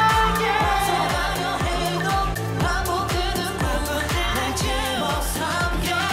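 K-pop dance track with a male singer's voice over a steady electronic beat and bass.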